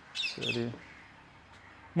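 A bird gives two quick high calls in close succession near the start, overlapped by a short low vocal sound from a man.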